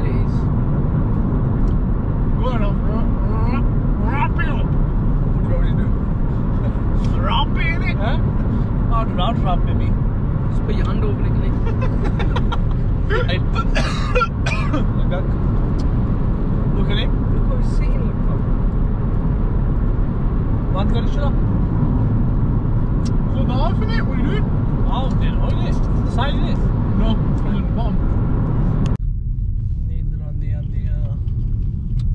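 Steady road and engine rumble inside a moving car's cabin, with people talking over it. The sound thins and drops in level suddenly near the end.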